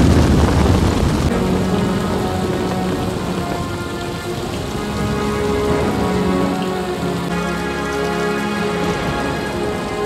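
Heavy rain pouring down, with a low rumble of thunder dying away at the start. From about a second in, a slow music score of held notes plays over the rain.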